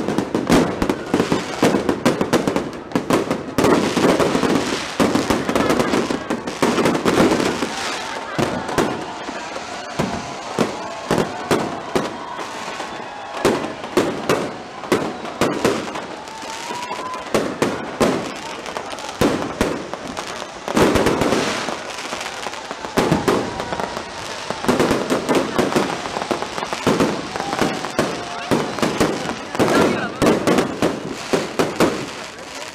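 Fireworks and firecrackers going off continuously, a dense, irregular string of cracks and bangs.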